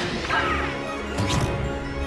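Film-trailer music with cartoon sound effects laid over it: a sliding, whistle-like pitch sweep about half a second in and a second swishing sweep past the middle.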